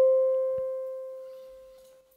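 A single synthesizer note, one steady pitch with a few overtones, fading out evenly to nothing over about two seconds.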